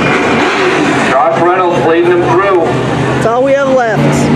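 Several dirt-track race trucks' engines running at speed on the oval, their pitch rising and falling as they rev and ease off going past.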